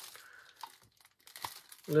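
Thin clear plastic bag crinkling faintly as it is picked up and handled, in a few brief rustles.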